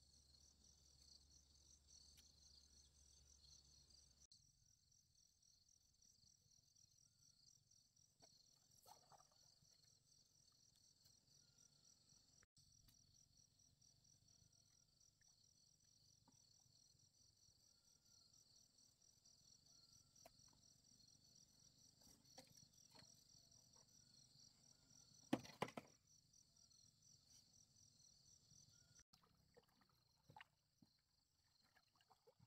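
A faint, steady insect chorus with a fast, high-pitched pulsing chirr, which stops about a second before the end. A single sharp knock comes about four to five seconds before the end and is the loudest sound.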